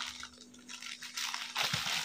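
Faint rustling and handling of a package's wrapping as a child works at opening a box, with a faint steady hum underneath.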